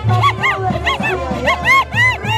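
Live festival dance music: a steady low drum beat about three times a second under a high melody of short sliding notes that rise and fall.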